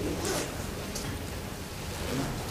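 Two brief, faint rustles over a low steady hum.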